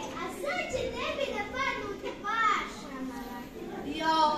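Children speaking into microphones, reciting in turn.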